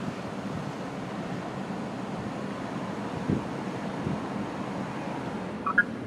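Steady low rumble and hiss of a car idling and creeping forward, heard from inside the cabin with the driver's window open. A short high chirp comes near the end.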